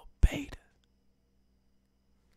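A man's short breathy whispered sound close to the microphone, with a low pop from breath on the mic at its start, lasting about half a second near the beginning.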